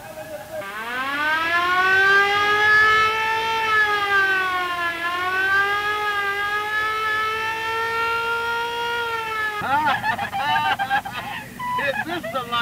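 Police car siren winding up in pitch, then wailing steadily with a slight dip in the middle for about nine seconds before cutting off suddenly. A fast wavering sound follows near the end.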